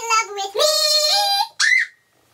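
A girl's high voice singing a long drawn-out note that steps up in pitch, followed by a brief high squeal; it cuts off just before the end.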